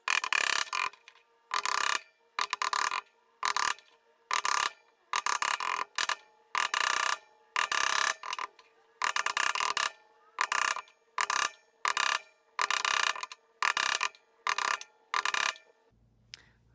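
Hammer tapping small nails into a painted wooden block: about two dozen short bursts of tapping, roughly one every half second, with brief quiet gaps between them.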